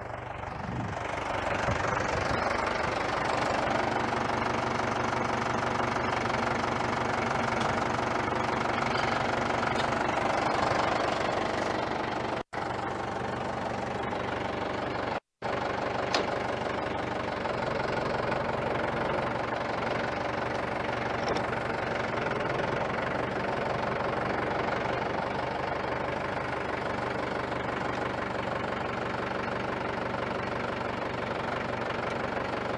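Mahindra compact tractor's diesel engine running under load while it works the front-end loader, lifting a generator in the bucket; it revs up about two seconds in and then runs steadily. The sound drops out briefly twice around the middle.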